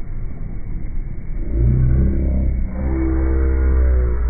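Slowed-down, deepened sound on a small boat at sea: a steady low rumble throughout, with a drawn-out pitched sound joining it from about one and a half seconds in.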